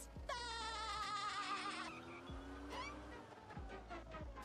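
Cartoon soundtrack: a long, wavering high-pitched cry lasting about two seconds, followed by lower held tones that slowly fall, with a few low thumps.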